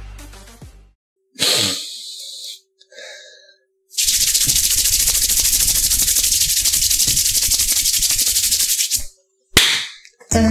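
Hands rubbing rapidly together close to the microphone for about five seconds from roughly four seconds in, a loud, steady scratchy swishing. It comes after a short whoosh about a second in, and a brief burst follows near the end.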